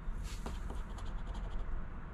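A round chip-shaped scratcher rubbing the coating off a scratch-off lottery ticket, in a series of short scratching strokes.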